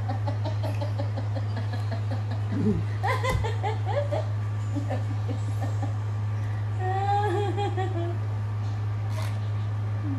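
Laughter and giggling in short bursts over a steady low hum, with a high, wavering vocal sound about seven seconds in.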